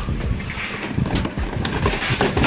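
Large cardboard box being shifted and rummaged through: cardboard scraping and rustling with many dull low knocks.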